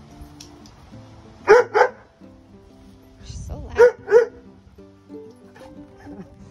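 F1 Labradoodle barking: two quick barks about a second and a half in, then two more about two seconds later, over background music.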